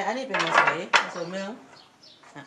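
Tubes in a rack on a wooden hand loom clattering against each other as they are handled, ending in a sharp click about a second in.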